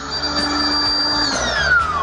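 The built-in electric air pump of an Air-O-Space inflatable sofa bed runs with a steady whine and rushing air as it inflates the bed. Its whine drops in pitch over the last second.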